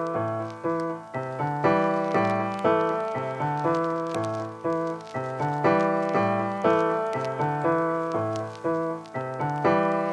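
Keyboard sample of a hip-hop beat playing a melody of struck chords, each fading away before the next, a new chord every half second to a second.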